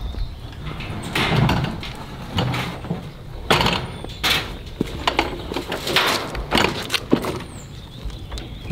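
Wheelbarrow knocking and rattling as it is wheeled off a utility trailer and down a metal mesh ramp, with footsteps on the trailer deck: a string of separate clanks and thumps, about one or two a second.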